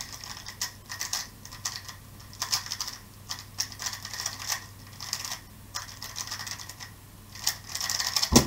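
An MF3RS M 2020 3x3 speedcube being turned fast during a timed solve: rapid, irregular bursts of clacking clicks as the layers snap round, with a dense flurry near the end.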